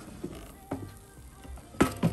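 Metal air fryer basket being handled and lifted out of its drawer: a light click a little under a second in and a sharper knock near the end, over faint background music.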